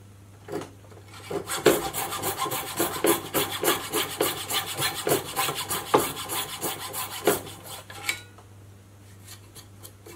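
Coping saw cutting a block of wood clamped in a vise: quick back-and-forth strokes that start about a second in and stop about two seconds before the end.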